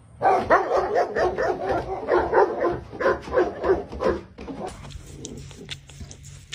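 A large dog barking rapidly and loudly, about three to four barks a second, stopping about four seconds in.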